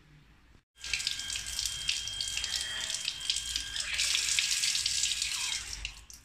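Water running hard from a tap fed by an automatic booster pump, a steady rush with a thin high whine over it. It starts abruptly about a second in and stops just before the end.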